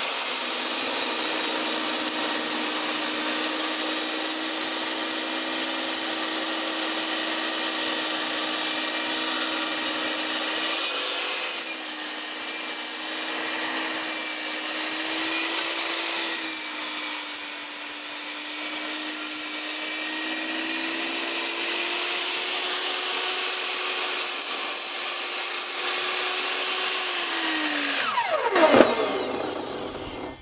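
VEVOR 1800 W benchtop table saw running and ripping through a round log, the motor's pitch sagging slightly as the blade takes load. Near the end the saw is switched off and spins down with a falling whine, with a loud knock as it slows.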